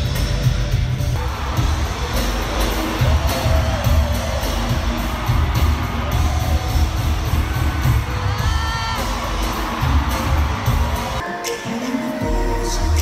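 Live pop music played loud through an arena sound system, recorded from the audience: a heavy bass beat with a voice singing over it and crowd cheering. The bass cuts out abruptly about a second before the end.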